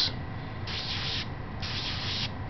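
Pencil strokes on paper: two scratchy shading strokes, each about half a second, the first a little over half a second in and the second about a second and a half in.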